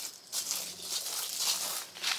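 Footsteps through short grass and scattered dry leaves, an irregular run of soft crunching, crinkling steps.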